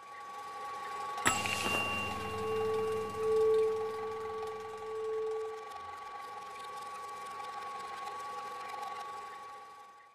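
Sound effect for an animated studio logo: a whirring, rattling film projector mixed with held synthetic tones. There is a sharp hit just over a second in and a lower hum that swells in the middle, and it all fades out at the end.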